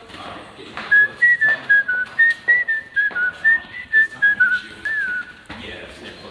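A person whistling a quick tune of about fifteen short notes, wandering up and down in pitch. It starts about a second in and stops about five seconds in.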